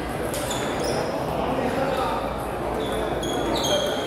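Table tennis ball being hit back and forth in a rally: a series of short, sharp clicks of the ball on paddles and table, over the steady background noise of a hall with other games and voices.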